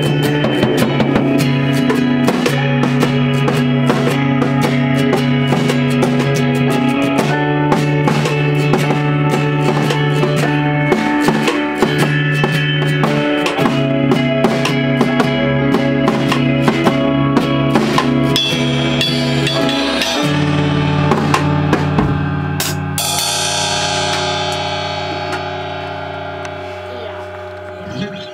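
Live band in a small room playing drum kit, electric guitar and keyboard together at full volume. About 20 seconds in the drums drop out, a cymbal crashes near 23 seconds, and the final chord rings out and fades.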